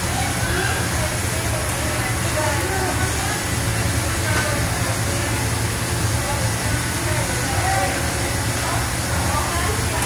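Indistinct chatter of nearby voices over a steady low hum and hiss.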